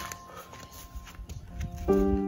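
Faint scattered footsteps on a dirt path under a faint steady tone, then background music with keyboard chords comes in near the end.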